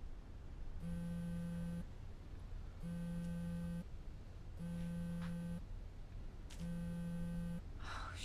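Telephone ringing tone heard through a phone's earpiece: four steady one-second rings, each followed by about a second of pause, over a low room hum.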